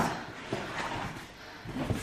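Cardboard shipping box being opened: a soft rustle of its flaps with a couple of light knocks.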